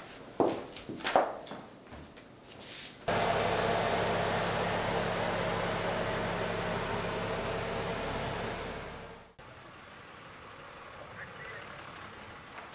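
A few light knocks and clinks at a table, then a sudden switch to the steady drone of a school bus's engine and road noise heard from inside the bus, which fades away about nine seconds in, leaving a quieter low background hum.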